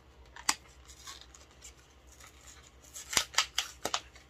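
A lip-colour package being opened by hand: one sharp click about half a second in, then a quick run of about five sharp clicks and snips near the end.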